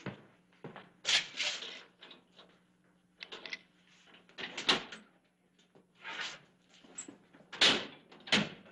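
Footsteps, then a series of knocks, clunks and clicks as a safe in the corner is worked open and its heavy door swung.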